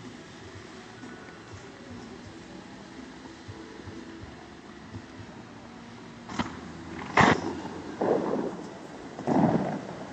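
Bellagio fountain's water shooters firing: a sharp crack about seven seconds in, then two short rushing bursts of water a second or so apart, over a steady low background.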